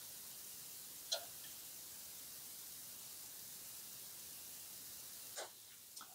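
Faint steady hiss of background noise, with one brief high chirp about a second in and a soft short sound near the end.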